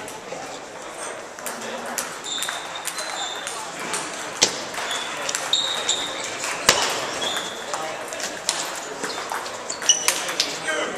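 Table tennis balls clicking off bats and the table during a rally, with more clicks from play at neighbouring tables, over a background of voices in a large hall. The two loudest clicks come about four and a half and six and a half seconds in.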